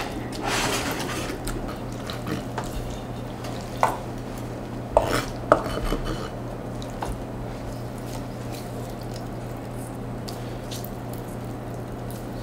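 A kitchen knife mashing tofu on a wooden cutting board: a soft scraping in the first second or so, then three sharp taps of the blade on the board around the middle, over a steady low hum.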